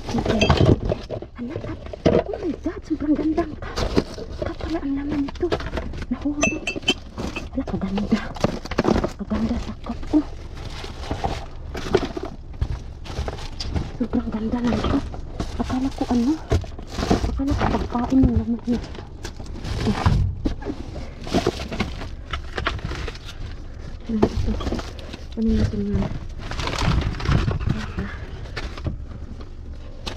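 Goods in a dumpster being rummaged through by hand: cardboard boxes and plastic packaging rustling, sliding and knocking together in a continual run of short clatters, with a voice talking at times.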